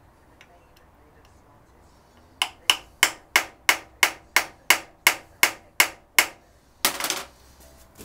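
About a dozen sharp metallic taps, about three a second, as a hammer strikes a screwdriver seated in the slot of a factory-secured throttle-butterfly screw on a Weber DCOE carburettor. One longer, rougher noise follows near the end.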